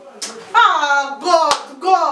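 A single sharp hand clap about one and a half seconds in, over a woman's speech.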